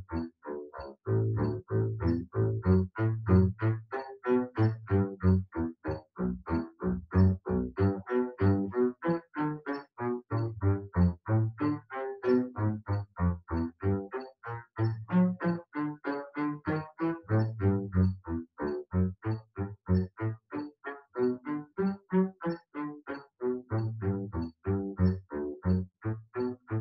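Double bass bowed in short, separated staccato strokes near the frog, a fast run of detached notes through an etude at full tempo. A faint metronome ticks about twice a second underneath.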